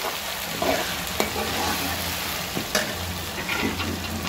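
Onions, garlic and ginger frying in ghee in a metal kadhai, sizzling steadily as a steel ladle stirs them, with a couple of sharp clinks of the ladle against the pan.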